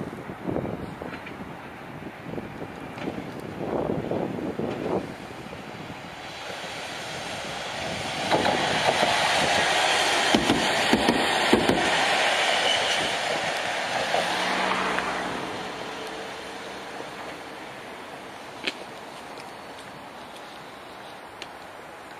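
A Chikuho Electric Railway 3000 series two-section articulated car rolling past close by. Its running noise swells about six seconds in, is loudest in the middle with a few wheel clicks over rail joints, and fades away as the car moves off.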